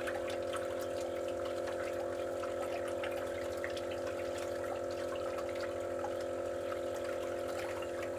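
Julabo ED immersion circulator running: a steady hum from its circulation pump motor, with the bath water churning and splashing lightly around the stirrer.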